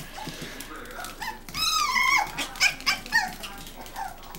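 Toy poodle puppy whining in short high-pitched cries, with one longer cry about a second and a half in.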